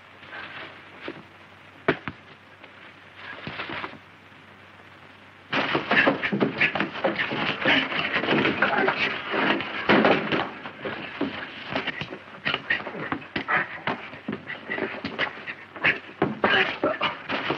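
A sudden commotion about five and a half seconds in: a dense, loud run of knocks, thuds and scuffling noises that keeps up to the end, after a few isolated clicks.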